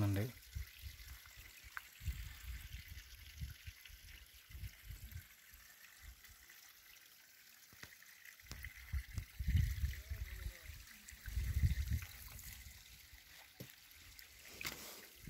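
Small trickle of water running down rocks, faint and steady, with irregular low rumbles on the microphone that are loudest around ten and twelve seconds in.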